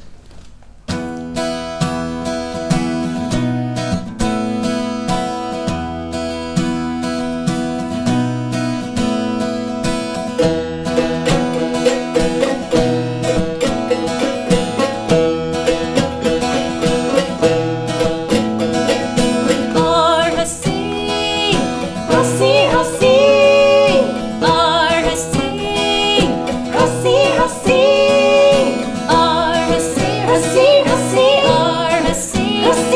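Acoustic guitar and plucked one-string tati lutes playing a rhythmic song introduction, starting about a second in; about twenty seconds in, women's voices join, singing the melody over the strings.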